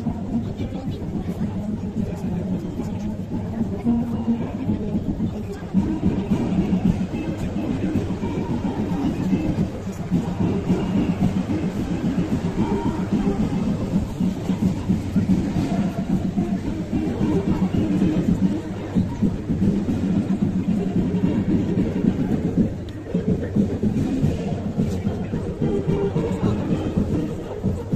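Music and an announcer's voice played over outdoor public-address loudspeakers, with the engines of passing parade vehicles underneath.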